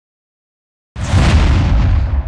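A sudden loud boom about a second in, with a deep rumble that dies away over the next couple of seconds: a cinematic impact sound effect.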